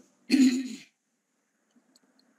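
A person clearing their throat once, a short rough burst about half a second long, then silence.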